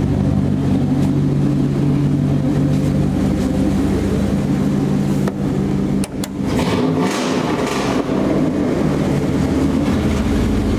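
Dodge Dakota pickup's engine running steadily through a new exhaust with a 12-inch glass pack muffler and dual tailpipes with chrome tips, a steady low exhaust note. About six seconds in there are a couple of clicks and a short burst of hiss.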